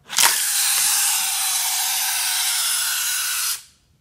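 Small battery-powered motor of a Hot Wheels Track Builder motorized lift running, a steady, hissy whir that starts abruptly just after the beginning and cuts off shortly before the end.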